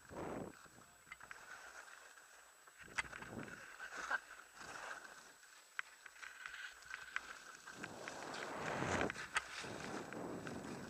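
Edges scraping and hissing over packed piste snow as the wearer turns downhill, coming in surges with each turn and loudest near the end, mixed with wind rushing over a helmet-mounted camera's microphone; a few sharp clicks break through.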